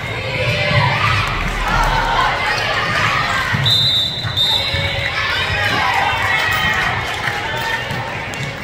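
Basketball game in a gym: players and spectators calling out, with the ball bouncing on the hardwood floor. A short, high-pitched squeak in two quick parts comes about halfway through.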